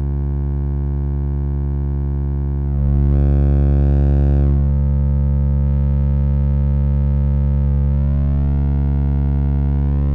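Serge modular synthesizer drone: a low sine-wave tone waveshaped by the Serge Extended ADSR, steady and rich in overtones. About three seconds in it turns brighter and louder for nearly two seconds, and its upper overtones shift again later as the knobs are turned.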